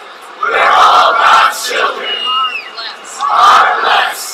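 A crowd shouting a spoken line together, twice, echoing a leader's words line by line as a human microphone.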